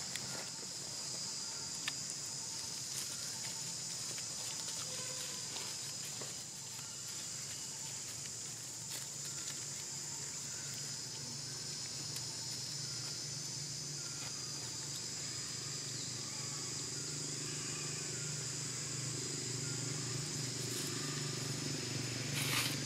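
Steady high-pitched chorus of insects with no break, over a low outdoor hum that grows a little louder in the last few seconds.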